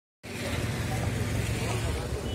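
Silence, then outdoor street noise cuts in abruptly: a steady low rumble with indistinct voices.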